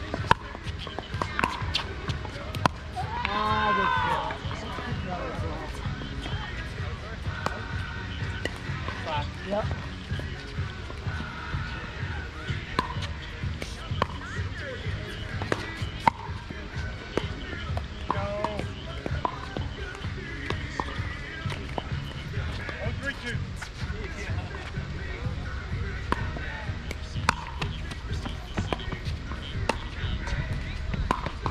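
Pickleball paddles hitting a plastic ball during a doubles rally: sharp pops at irregular intervals, some from neighbouring courts, over distant voices.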